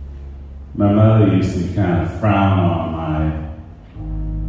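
A man's voice in a drawn-out, chant-like delivery: two long phrases starting about a second in, over a low, sustained musical backing.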